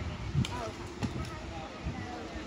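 Faint voices of spectators talking at a baseball field, with one sharp knock about half a second in.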